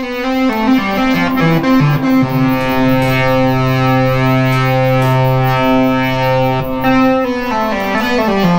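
Behringer 2600 analog synthesizer playing a slow line of sustained notes with its three oscillators mixed together, a big phasing tone. One low note is held for about four seconds in the middle.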